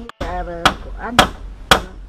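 Hammer striking the bamboo railing framework of a tree house: three sharp blows about half a second apart.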